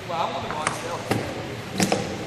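Three sharp knocks on a hardwood gym court during wheelchair rugby play, the loudest near the end. A short shout comes just after the start.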